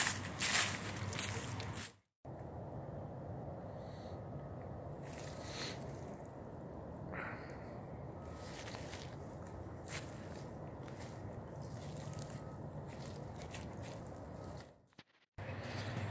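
Footsteps on a yard covered in dry leaves and pine needles, over steady outdoor background noise, with a few faint short high tones every second or two.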